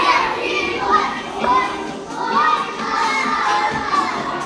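A group of young children singing and shouting together along to music.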